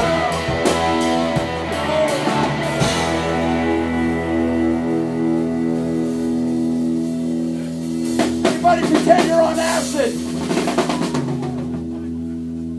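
Live rock band with electric guitars, bass and drums ending a song: drum hits for the first few seconds, then a chord held ringing from the guitar amplifiers, with a fresh flurry of drum and cymbal hits and a shouted voice about eight to ten seconds in.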